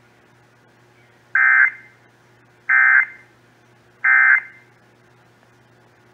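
Emergency Alert System end-of-message data bursts, the screechy digital SAME code sent three times to close the alert, heard through a small portable radio's speaker. Three short bursts about a second and a half apart, each trailing off briefly, over a faint steady hum.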